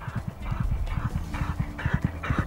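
Hoofbeats of a ridden racehorse coming up a training gallop, in a steady rhythm of about three strides a second.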